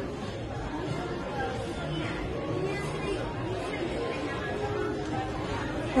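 Steady background chatter: a murmur of several people talking at a distance in a large indoor public space, with no voice close by.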